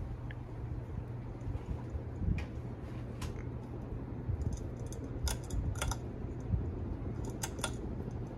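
Ceiling fan running with a steady low hum, with several sharp clicks from its pull-chain speed switch as it is worked up to high. Two quick pairs of clicks come in the second half.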